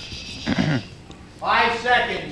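Indistinct voices and laughter: a short sound about half a second in, then a louder stretch of laughing or talking near the end.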